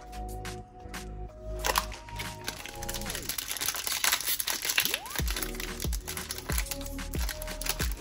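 Foil wrapper of a Panini Capstone baseball card pack crinkling and crackling as it is worked open by hand. The pack is stiff and slow to tear. Background music with sustained notes plays throughout.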